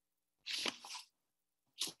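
A person's sharp intake of breath close to a headset microphone, a hissy sound of about half a second in two quick parts, followed by a shorter breath sound just before speech resumes.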